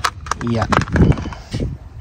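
Mostly speech: a man's short 'ja', with a few sharp clicks around it and a low steady rumble underneath.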